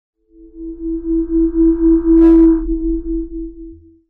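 Synthesized intro sting: a steady electronic tone over a low hum, pulsing about four times a second. A brief whoosh comes a little past the middle, then it fades out near the end.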